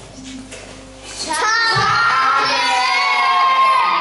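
Children's voices singing a loud, wavering chant that starts about a second and a half in, after a quieter opening.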